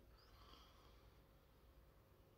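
Near silence, with a faint sniff at a glass of beer about half a second in, then quiet room tone.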